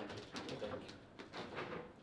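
Table football (foosball) table in play: a few light, scattered clicks and knocks of the ball and plastic players as the rods are handled.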